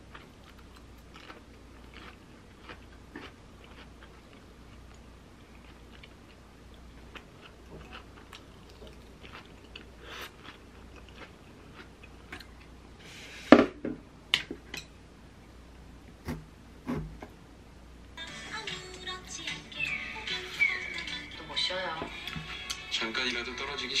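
Eating sounds: chopsticks clicking on a ceramic bowl and crunchy chewing of a lettuce salad, with one sharp clatter about halfway through. From about three quarters in, a TV drama's dialogue and music play from a phone.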